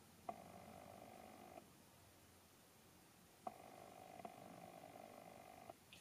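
Near silence, with two faint spells of soft, fluttering rubbing, each starting with a small click: a fluffy powder brush buffing powder highlighter onto the cheek.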